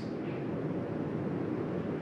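Steady, even background noise with no distinct events, at the same level as the pauses between the narration around it.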